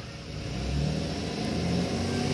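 A low, steady engine hum, growing gradually louder.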